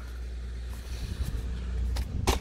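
A low, steady vehicle-like rumble that grows a little louder toward the end.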